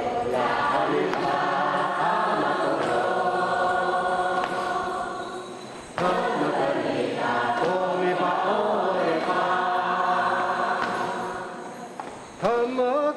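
Many voices singing together in a slow, chant-like hymn with long held notes. The singing fades out a little before the midpoint, comes back suddenly, and fades again near the end.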